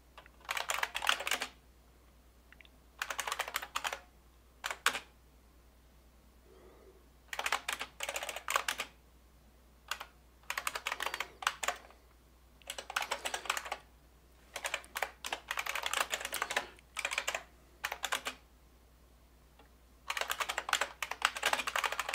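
Typing on a computer keyboard: short runs of rapid keystrokes broken by pauses of a second or two while code is entered.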